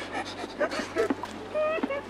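A woman's short, breathy laughter with brief high-pitched voiced sounds, over a faint steady low hum.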